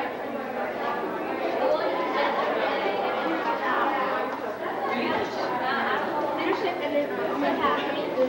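Indistinct chatter of many people talking at once, overlapping voices with no single clear speaker.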